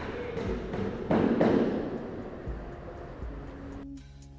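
Air spray gun hissing as it sprays clear coat, with a louder surge of spray about a second in.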